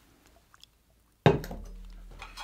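A stainless steel jug set down on a workbench a little over a second in: a sudden metallic clunk that keeps ringing as it fades. Before it, only a few faint small ticks.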